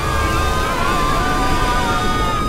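Film score music with long held high notes over the deep rushing sound of a huge ocean wave.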